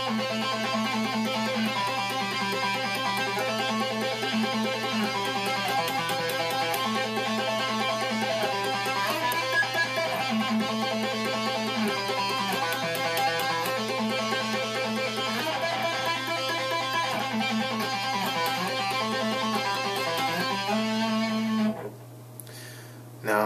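Electric guitar played with two-handed tapping, a continuous run of notes cycling through A, C, E and G on the fourth string as a right-hand strengthening drill.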